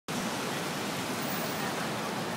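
Steady hiss of rainy city street ambience: a constant, even wash of noise from rain and wet street traffic, with no distinct events.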